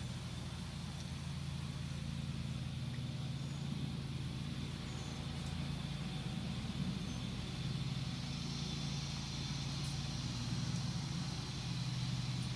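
A steady low motor hum with no change in pitch. A faint high-pitched hiss joins it about two-thirds of the way through.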